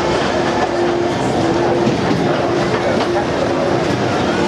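Crowd chatter over the rumble and clatter of a fairground ride running on its rails, with a steady hum that breaks off and comes back.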